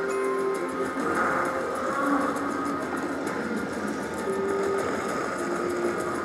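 Raging Rhino Rampage slot machine playing its free-spins bonus music and tones as the reels spin, with held notes at several pitches over a dense, steady background din.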